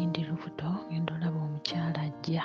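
A song playing: a male voice singing in short phrases over steady held instrumental backing.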